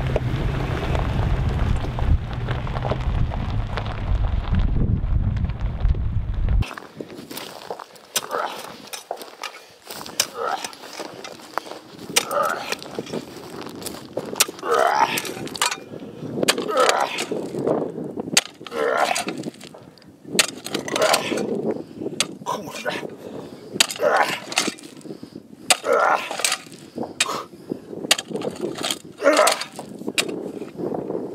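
For about the first seven seconds, a pickup truck drives on a dirt track: a low rumble with wind noise. After a sudden change, a clamshell post-hole digger is jabbed again and again into stony desert ground with sharp crunching strikes. A man grunts with effort between the strikes.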